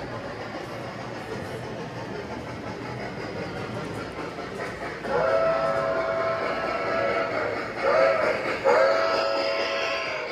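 G scale model train's onboard sound system blowing a chime whistle: one long blast starting about halfway through, a short one, then another long one. It sounds over the steady rumble of the model train's wheels running along the track as it comes up to pass close by.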